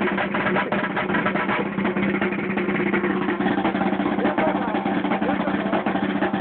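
Marching snare drum played with sticks in a fast, dense run of strokes and rolls, with no break.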